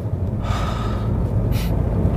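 A man lets out a long, heavy sigh, with a short breath near the end, over the steady low rumble of a car cabin.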